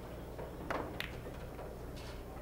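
A pool shot: two sharp clicks about a third of a second apart, the cue tip striking the cue ball and then the cue ball hitting another ball, over a low steady hum.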